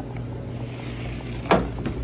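Steady low hum of kitchen equipment under the rumble of a phone being carried across a kitchen, with a single sharp knock about one and a half seconds in.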